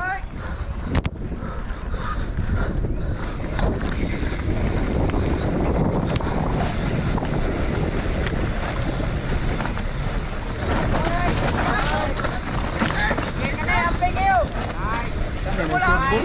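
Wind rushing over the helmet or bike camera's microphone on a fast mountain-bike descent, with the tyres rolling over dirt and the bike rattling on rough ground. Voices shout in the last few seconds.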